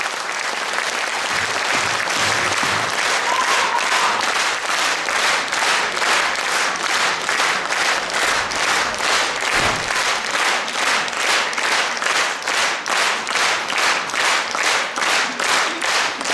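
Audience applause that settles into rhythmic clapping in unison, about three claps a second.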